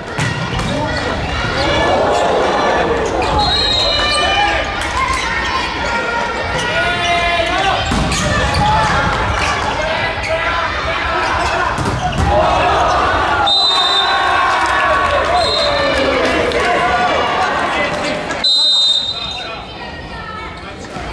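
Indoor volleyball play: the ball is struck and hits the court with several sharp smacks, amid continuous shouting and voices from players and crowd, with short high squeaks.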